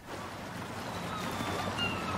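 Seaside ambience: a steady wash of wind and water, with faint bird calls coming in about a second in.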